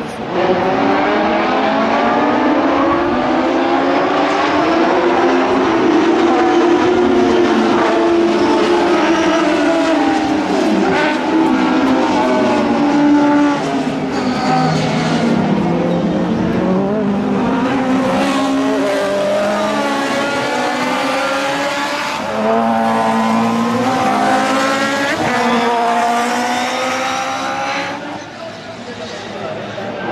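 Autocross race cars at full throttle: loud engines revving up and falling back repeatedly through gear changes, several heard together. The engine noise jumps up just after the start and stays loud throughout.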